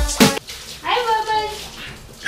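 Handheld shower head spraying water over a large dog in a bathtub, a low steady hiss of water. Background music ends with a last hit just after the start, and a short, high, wavering cry comes about a second in.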